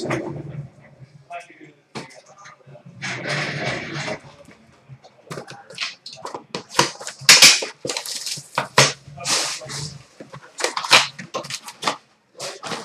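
A sealed Panini Certified hockey card box being torn open: the wrapper and cardboard crinkle and rip, with a quick run of sharp tears through the second half.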